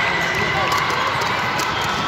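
Din of a large indoor volleyball hall: a steady wash of indistinct voices from players and spectators, with balls bouncing and smacking on the courts as short scattered knocks.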